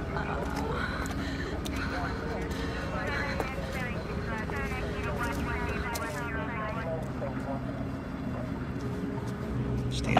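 Faint voices over a steady background with a low, even hum.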